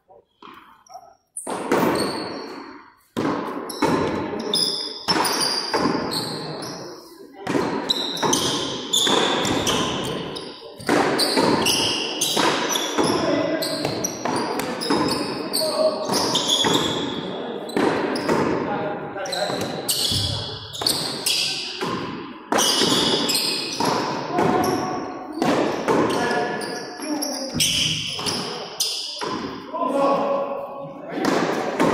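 Frontón ball (pelota de lona) struck by gloved hands and smacking against the court wall and floor in a rally, one sharp echoing impact after another, starting about three seconds in.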